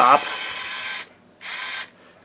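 Small battery electric screwdriver motor, a knockoff 'Black & Decker', running with a steady whir, stopping about a second in, then running again briefly and stopping.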